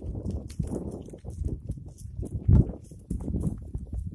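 Goats browsing a shrub at close range: irregular rustling and crackling of leaves and twigs as they pull at the branches and chew, with a louder burst about two and a half seconds in.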